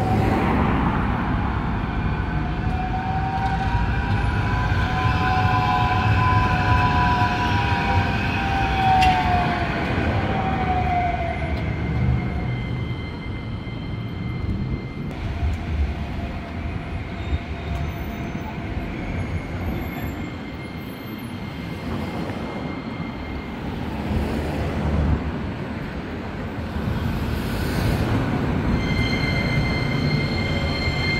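Electric tram running on street tracks, its motor whine rising and then falling away over the first ten seconds or so, above the rumble of city traffic. Near the end a tram passes close by with a steady high-pitched whine.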